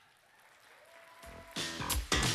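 Near silence, then audience applause that starts softly and swells to full strength just over a second in.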